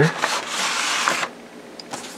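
Rustling of a paper instruction sheet and the plastic-bagged parts around it as the sheet is pulled from a model kit box, lasting about a second.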